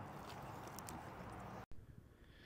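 A man chewing a mouthful of burrito, with faint soft clicks over a steady background hiss. The sound cuts off suddenly near the end.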